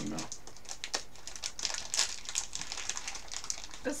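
Plastic snack wrapper crinkling and crackling as it is handled and torn open, a quick irregular run of small crackles.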